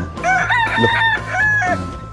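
Rooster crowing once: a long call in several rising and falling parts, lasting about a second and a half.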